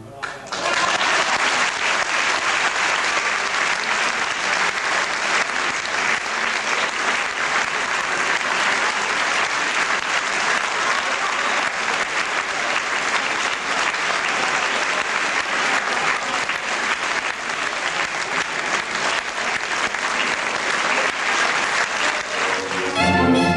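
Audience applauding: dense, steady clapping that starts just after a violin and piano piece ends.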